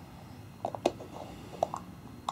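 A few light clicks and taps of a small plastic cosmetic cream jar being handled and its screw lid turned by a child's hands.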